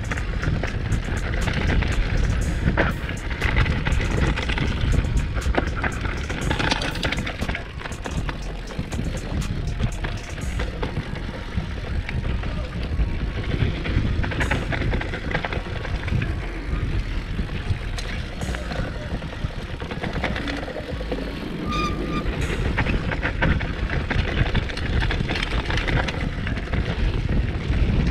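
Mountain bike riding fast down a dirt and gravel trail: tyres rolling over the ground, with rattles and clicks from the bike and wind on the microphone.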